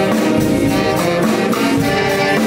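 A live dance band plays a tune led by a horn section over a steady, even beat.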